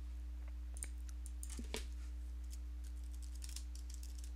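Faint computer-keyboard typing: a quick, irregular run of keystrokes starting about a second in, over a steady low electrical hum.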